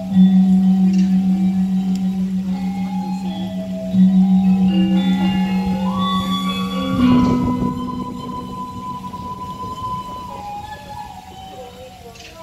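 Balinese gamelan playing: a large gong struck at the start and again about four seconds in, its low hum pulsing as it fades, under a melody of metallophone notes. A louder flurry of strokes comes about seven seconds in, and the music grows quieter towards the end.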